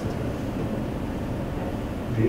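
Steady background room noise with no speech: an even low hum with a hiss over it.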